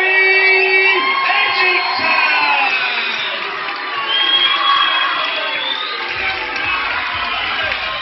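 Crowd cheering and shouting, many voices at once, loudest in the first second or so.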